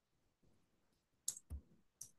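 Faint computer keyboard keystrokes, a few short clicks bunched near the end, one with a dull low thud.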